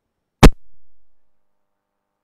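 A single sharp microphone pop about half a second in, followed by a faint low rumble that dies away within a second: a hand-held microphone being handled or switched on.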